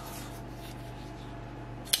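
Faint rustling of a plastic blister-pack knife package being handled, with one sharp click near the end, over a low steady hum.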